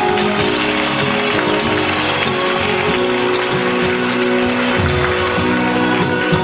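Live band of keyboard, electric guitar and saxophone playing the instrumental ending of a song, with the vocalist not singing.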